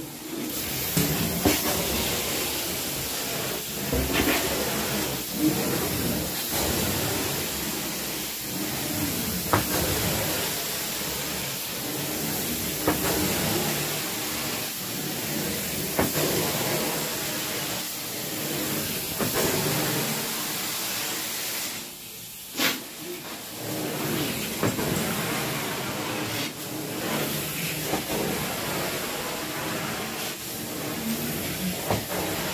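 Carpet-cleaning extraction wand drawn across carpet: a steady rushing hiss of suction and spray, with a short sharp click every few seconds and a brief dip a little after two-thirds of the way through.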